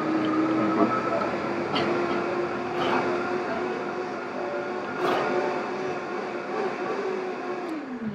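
A motor vehicle's engine hums steadily, then drops in pitch just before the end. A few sharp clicks sound over it.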